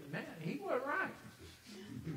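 People's voices talking in a room, with a high, gliding vocal sound about a second in.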